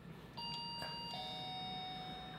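A two-note electronic chime: a higher note, then a lower one about three-quarters of a second later, the two ringing on together like a ding-dong doorbell.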